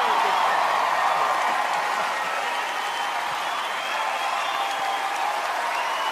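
Audience applauding steadily, with voices mixed in.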